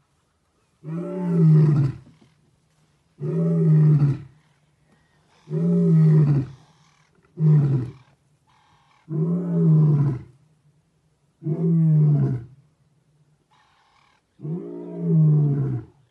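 Male lion roaring: a run of seven deep, grunting roars, roughly one every two seconds, with a shorter one about halfway through.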